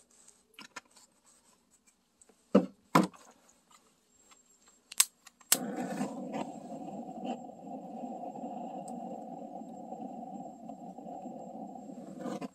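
A few handling clicks and knocks, then a handheld gas torch lit with a sharp click a little over halfway in. Its flame then burns with a steady rushing noise, blown into the bottom air hole of a log stove to relight the alcohol-soaked kindling.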